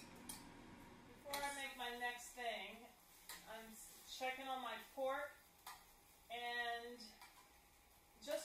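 A woman's voice in three short phrases that the recogniser did not take for words, some syllables held as steady notes, with a light clink of dishware near the start.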